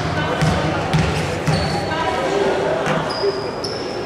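A basketball being bounced on a wooden court floor in a steady dribble, about two bounces a second, then one more bounce near the three-second mark, as a player dribbles at the free-throw line.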